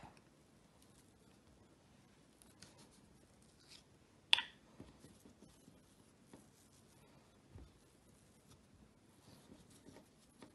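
Faint handling sounds of a plastic bottle lid being pressed into soft salt dough on a wooden table and the dough being peeled away, with one sharp click a little over four seconds in.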